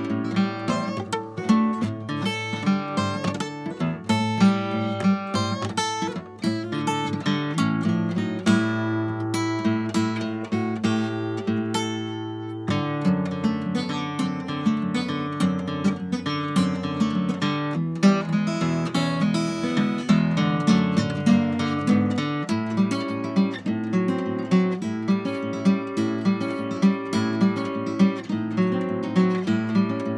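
Solo acoustic guitar playing a blues instrumental break, with strummed chords and picked notes throughout and a few held, ringing notes around the middle.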